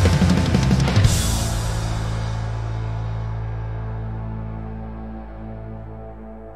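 Rock band with heavy drums and cymbals playing up to a final hit about a second in. A held chord then rings on with the cymbals and slowly fades away.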